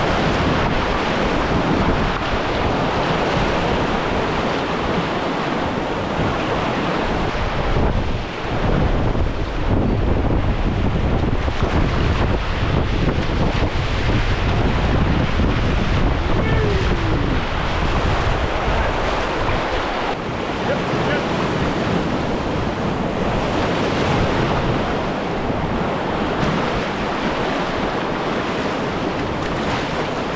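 Rushing whitewater of river rapids around a canoe, a loud, steady roar of water, with wind buffeting the microphone.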